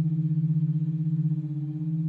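Contemporary chamber music for bass saxophone, bass trombone and bass electric guitar: a single low note held steady, with a fast, even pulsing in its level.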